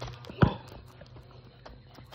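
A basketball bouncing once on a concrete driveway, a single sharp thud about half a second in, followed by faint shoe scuffs and steps on the concrete.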